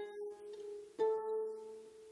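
Douglas Harp Co 33-string single-action lever harp with a solid spruce soundboard, played slowly in single notes. A plucked note rings on, and a new, slightly higher note is plucked about a second in and left to ring.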